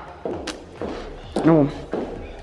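Footsteps and handling noise from someone walking across a bare tiled floor while carrying the camera. A single sharp click comes about half a second in, and a brief wordless vocal sound comes past the middle.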